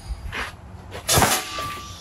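Compressed-air potato cannon, set to around 40 PSI, firing: a sharp blast a little over a second in, with a fainter pop before it. The blast is followed by a brief ringing tone.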